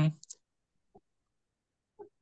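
A man's short "mm" trailing off at the start, then silence broken by a few faint, short clicks: two close together just after the voice, one about a second in, and one at the very end.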